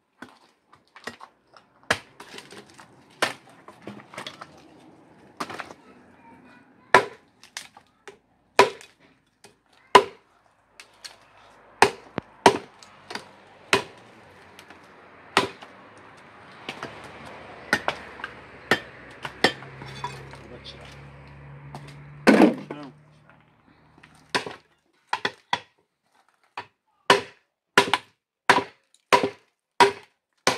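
Hatchets chopping dry firewood: sharp, separate wooden cracks at an uneven pace of roughly one every second or two, with one especially loud split a little after the twenty-second mark.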